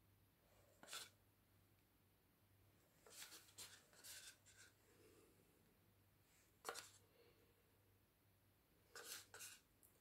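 Near silence broken by a few faint, brief scrapes of a wooden stir stick against a paint cup as paint is stirred and dabbed: one about a second in, a short cluster around three to four seconds, one near seven seconds and two near the end. A faint low hum lies underneath.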